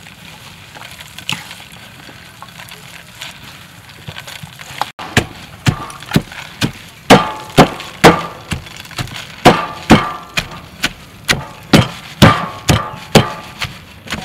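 A wooden pestle pounding long beans, greens and beef in a stainless steel bowl, starting about five seconds in and striking steadily about twice a second.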